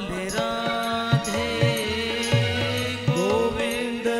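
Devotional bhajan music: a man singing over steady held drone tones, with percussion keeping a regular beat.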